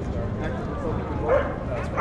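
A dog gives a short bark a little over a second in, over the chatter of a crowd.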